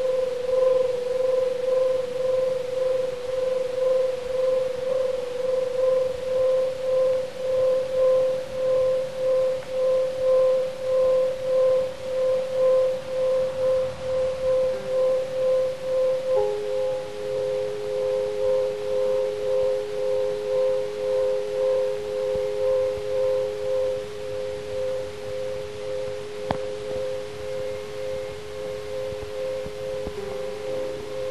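Experimental drone music: a sustained tone that swells and fades about once a second over a faint hiss. A second, slightly lower tone joins about halfway through.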